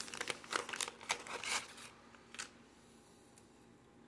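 Wax-paper wrapper of a 1988 Topps baseball card pack crinkling and tearing as it is opened and the cards are pulled out: a quick run of short rustles that dies away about halfway through.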